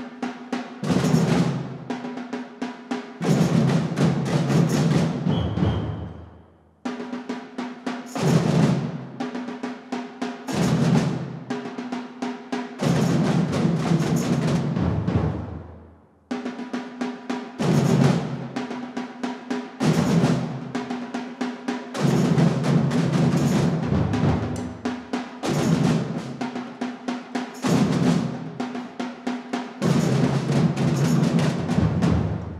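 A samba drum band plays traditional samba in a driving rhythm on surdo bass drums, snare and repinique drums, tamborims and shakers. The band cuts off twice, about seven and sixteen seconds in, letting the drums ring out briefly before crashing back in together.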